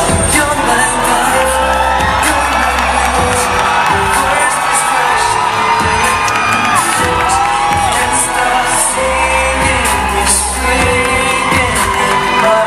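Two male singers taking turns on a pop song, sung live into handheld microphones over backing music with a steady drum beat.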